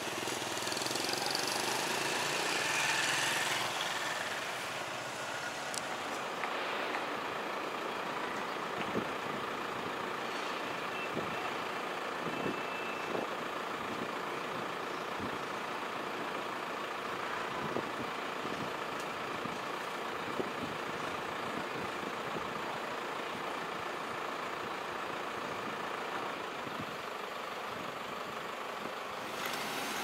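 Street traffic ambience: a steady hum of motor vehicles, louder in the first few seconds as a vehicle goes by, with a few light knocks.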